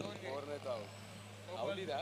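Faint, distant voices of people talking across the ground over a steady low hum, with no commentary.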